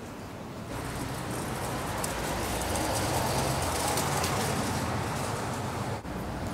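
City street traffic noise, swelling about a second in and loudest around the middle as a vehicle passes close by.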